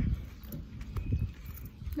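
Footsteps on pavement picked up by a phone held while walking: irregular low thumps and knocks.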